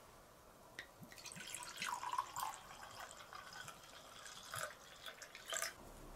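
Sake poured from a glass bottle into a cup, splashing and gurgling from about a second in until just before the end.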